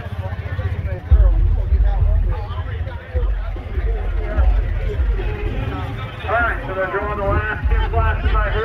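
Background voices of people talking, with a heavy low rumble that comes in about a second in and swells and fades irregularly.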